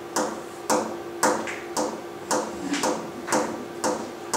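The same short, sharp tap repeated about eight times at an even, unchanging pace of about two a second, each with a brief ring. It is one sound kept invariant in both timing and character.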